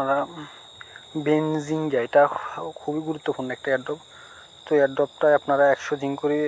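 A voice talking in short phrases over a steady high-pitched whine that runs without a break.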